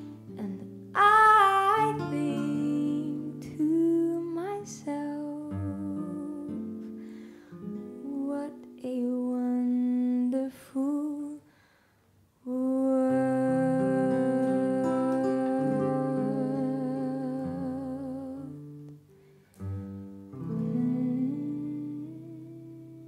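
Female jazz vocalist singing a slow ballad over plucked acoustic guitar and bass. About halfway through, after a brief pause, she holds one long note with vibrato for several seconds.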